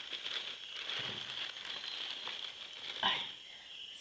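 Faint rustling and light crinkling of handling things on a kitchen table, over a steady high-pitched chirring like crickets; a brief exclamation about three seconds in.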